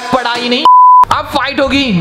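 A single short, steady electronic beep, under half a second long, dropped into a man's narration and briefly replacing it.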